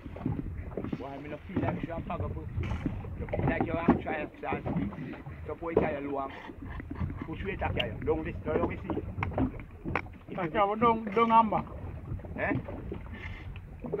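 People talking on and off, not clearly made out, over a steady low rumble of wind on the microphone.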